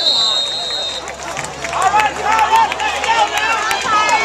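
A referee's whistle blows one steady blast that stops about a second in, followed by many voices shouting from the crowd.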